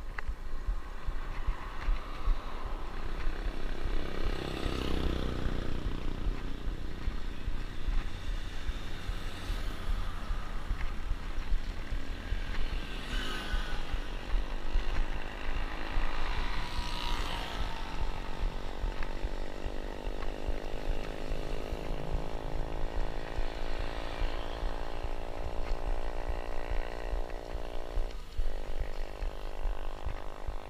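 Wind rumbling on an action camera's microphone on a moving bicycle, with road traffic passing. In the second half a vehicle engine's steady drone rises slowly in pitch for about ten seconds, then drops away.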